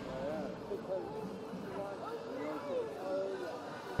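Faint background chatter of spectators' voices, several overlapping, with no loud thuds or knocks.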